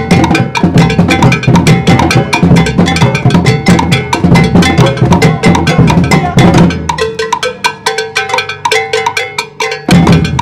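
Percussion ensemble of large metal-shelled bass drums (surdos) and djembes playing an interlocking rhythm. About seven seconds in the deep bass drums drop out, leaving only the lighter, higher strokes, and the bass drums come back in right at the end.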